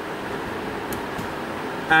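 Steady background noise, with a single faint click about a second in.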